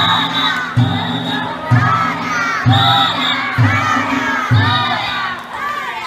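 A group of young danjiri rope pullers shouting chants together as they haul the float, over a steady drumbeat a little faster than once a second.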